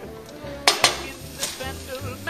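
Three sharp clicks of a spatula against a stovetop griddle, in the second half-second and again about a second and a half in, over a faint sizzle of food frying on the griddle.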